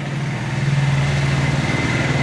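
An engine running steadily: a low, even drone with a faint thin high tone above it.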